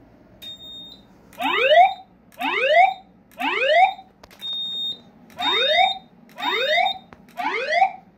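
Fire-alarm voice-evacuation speaker strobe sounding the rising 'whoop' alert tone after a manual pull station has been activated, the signal to evacuate. Each sweep rises in pitch for about half a second and repeats about once a second, six in all with one skipped midway. Short, steady high-pitched beeps sound between and over the sweeps.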